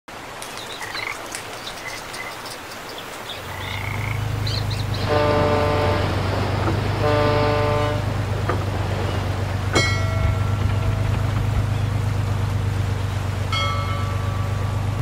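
Large ship's horn sounding two blasts of about a second each over the steady low drone of the ship's engine, which comes in about three and a half seconds in. Before that, scattered high chirping calls.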